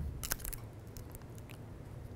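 A few faint clicks and plastic handling noises from a speedlight flashgun as it is switched on and handled.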